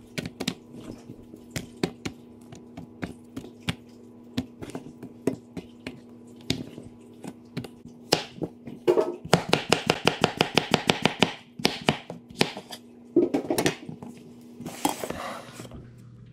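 Chef's knife slicing vegetables, zucchini among them, on a wooden cutting board: a string of irregular knife knocks against the board, then a fast run of chopping about nine seconds in, and more cuts near the end. A steady low hum runs underneath for most of it.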